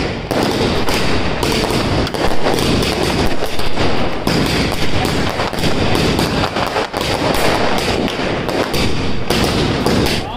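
Fireworks and firecrackers going off in a dense barrage: rapid, overlapping bangs and crackling with no let-up.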